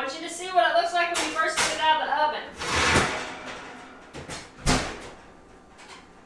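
A voice away from the microphone for about two seconds, then a short clatter and, about three-quarters through, a single thud of a door shutting.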